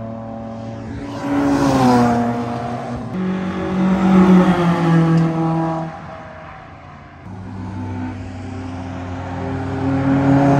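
Small race cars passing on a circuit at speed, their engines revving high. One engine note falls in pitch as a car goes by a second or two in, a loud steady engine note follows, it fades near seven seconds, and then another car's engine builds up.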